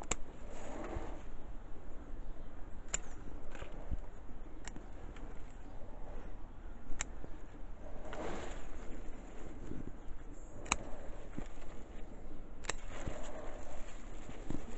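Bonsai scissors snipping the shoots and leaf stems of a large-leaved lime, about seven sharp snips a few seconds apart, with the leaves rustling as they are handled between cuts.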